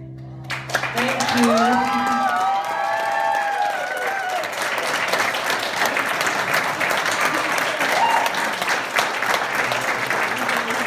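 Audience applauding and cheering at the end of a song. The clapping starts about half a second in as the last held chord fades, with voices calling out and whooping over it during the first few seconds.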